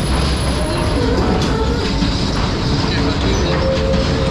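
Children's car ride running under power, its small cars rolling round the circular track with a steady low rolling noise.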